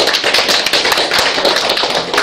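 Audience applauding: a dense, continuous stream of hand claps.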